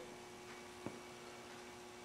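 Quiet room tone dominated by a steady electrical hum, with one faint click a little under a second in.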